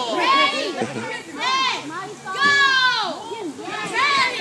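A group of children shouting and squealing at play, with high squeals that rise and fall about half a second, a second and a half, and two and a half seconds in.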